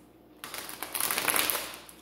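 A deck of tarot cards being shuffled in the hand: a quick rattle of many card clicks starting about half a second in and lasting about a second and a half.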